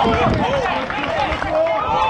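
Several voices shouting and calling over one another at a football pitch, players and spectators, over steady outdoor background noise.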